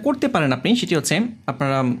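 Speech only: a man talking in Bengali, with one drawn-out syllable near the end.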